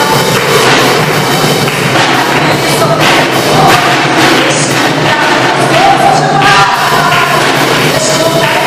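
Live worship music played loud through the hall's speakers: a woman singing over band accompaniment with repeated drum hits.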